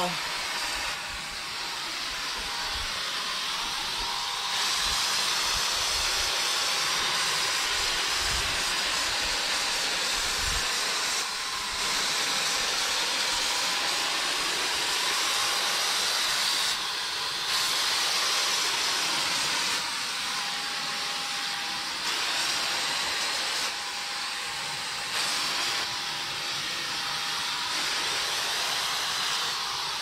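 Wagner Flexio corded electric paint sprayer running while paint is sprayed: a steady airy hiss with a faint steady whine. The sound dips briefly a few times.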